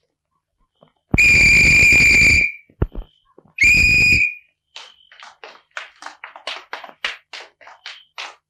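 A night watchman's whistle blown in two shrill blasts, a long one of over a second and a shorter one about two seconds later. These are followed by quick running footsteps, about four a second.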